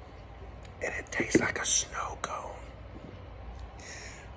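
A man's breathy, whispered mouth sounds with a few lip-smack clicks, savouring a sip of beer, lasting about a second and a half from about a second in.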